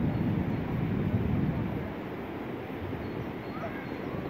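Outdoor ambience: a low rumble, typical of wind on a phone's microphone, strongest in the first two seconds and then easing, with faint voices in the background.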